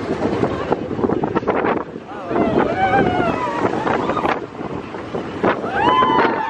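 Wind rushing over the microphone and the rumble of a moving ride vehicle, with high voices crying out about two and a half seconds in and again near the end.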